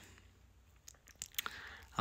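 Near silence: room tone with a few faint, short clicks about a second in.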